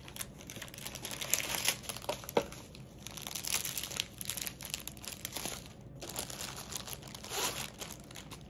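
Thin clear plastic wrapping on a rolled diamond-painting canvas crinkling as it is handled and pulled off, in uneven bursts with a few sharper crackles.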